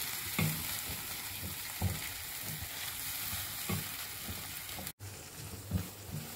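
Ground onion-coconut masala paste frying in oil in a nonstick kadai, a steady sizzle, with a spatula stirring and scraping across the pan a few times. The masala is roasting to the stage where the oil separates at the sides. The sound cuts out for an instant near the end.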